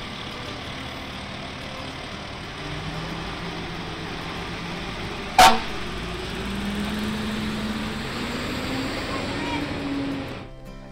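Fire engine's diesel engine running and pulling away, its pitch rising as it gathers speed, with one short, loud horn toot about five seconds in.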